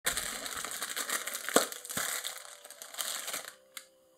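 Rustling and crinkling from a person moving on a fabric sofa and handling something, with two sharp knocks a little before halfway. It stops about half a second before the end, and a single click follows.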